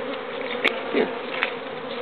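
A swarm of honeybees buzzing steadily around an opened wooden hive box, with two brief clicks partway through.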